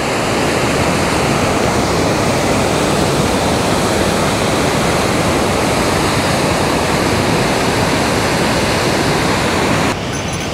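A waterfall on the glacier-fed Sunwapta River: a loud, steady rush of falling water. It fades in over the first half-second.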